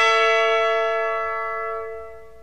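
Orchestral music: a loud sustained chord, the last of a run of short brass-led chords, held and slowly dying away.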